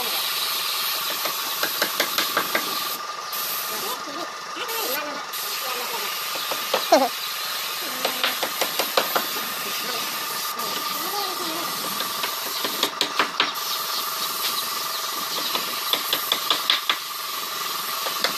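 Gravity-feed compressed-air spray gun spraying paint onto a steel cabinet, a steady hiss of air, with several bursts of rapid sharp ticking over it.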